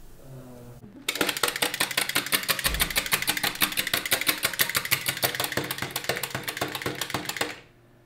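Tin wind-up toy squirrel hopping across a tabletop, its clockwork running in a fast, even clatter of clicks. It starts about a second in and stops abruptly near the end as the spring runs down.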